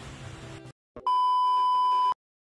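A steady electronic beep tone at about 1 kHz, starting about a second in and lasting about a second before it cuts off abruptly. Faint background noise comes before it.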